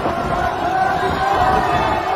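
A crowd of voices shouting and chanting, with a long held tone that wavers slowly over the din.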